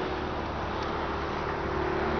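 Steady background noise with a low hum at an even level, with no distinct event.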